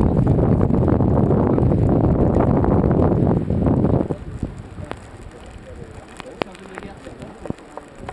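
Strong wind buffeting the microphone on a sailboat under way, loud and heavy for about four seconds. It then drops suddenly to a much quieter wash with scattered sharp clicks and knocks.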